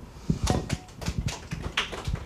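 A run of light, irregular clicks and knocks, several a second, in a small room.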